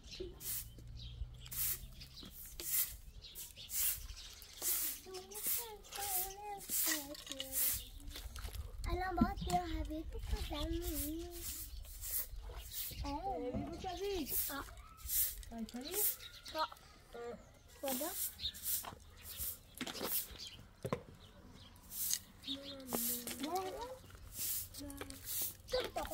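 Bundled straw broom swishing across a concrete yard in repeated short strokes, with a young child's voice babbling now and then.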